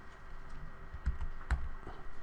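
A few light clicks from the computer input used to work the screen, the loudest about a second and a half in.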